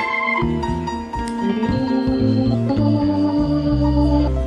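Live band playing, with organ-like keyboard chords held over a moving bass line.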